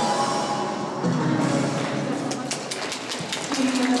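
The routine's music ends, then scattered hand-clapping from a small audience begins about two seconds in, with voices in the hall.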